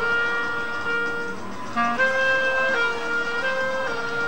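Solo clarinet playing a slow melody of long held notes, with a quick run of short notes about two seconds in.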